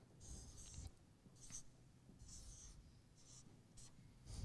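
Faint scratchy strokes of a marker pen drawing on flip-chart paper: about five separate strokes, the first and longest near the start, a short one right at the end.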